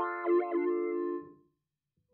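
An electric-piano chord from a software instrument, played through Thor's comb filter in Reason. Its tone wavers briefly as the comb filter's frequency is turned, then the chord fades out well before the end.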